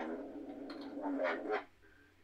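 A person's drawn-out, croaky hesitation sound, a wordless voiced filler. It lasts about a second and a half and then stops.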